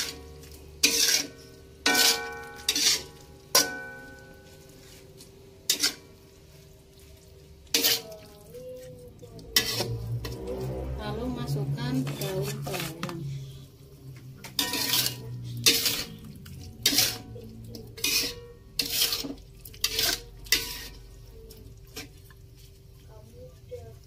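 Metal spatula scraping and knocking against an aluminium wok while stir-frying, in a string of sharp clatters; a few of the early knocks ring briefly.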